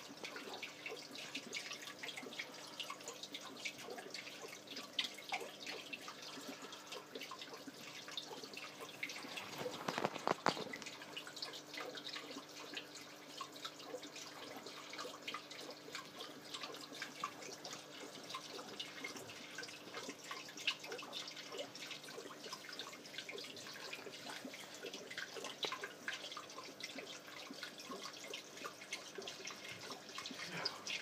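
Aquarium water splashing and trickling where the surface is churned to foam, likely by a filter return: a continuous patter of small drips and splashes over a faint steady hum, with a louder burst of splashing about ten seconds in.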